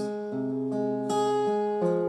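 Acoustic guitar strummed, its chords ringing and changing three times, with no voice over it.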